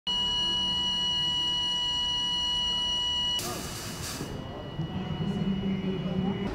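Fire alarm sounder giving one steady, high-pitched electronic tone that cuts off abruptly about three and a half seconds in. A brief hiss follows, then a low steady hum.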